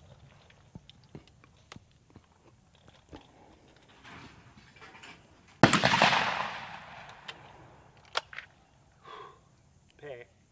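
Over-and-under shotgun being reloaded between skeet targets: small clicks of shells and the broken-open action, then a loud shotgun shot a little past halfway that echoes and fades over about two seconds. A sharp click about eight seconds in as the action is snapped shut.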